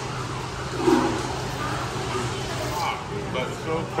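Biting into and chewing a crunchy deep-fried battered lobster tail, with a short louder sound about a second in. A steady restaurant hum and faint voices run underneath.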